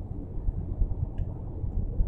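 Steady low rumble of road and engine noise inside a car's cabin at freeway speed, with a faint tick about a second in.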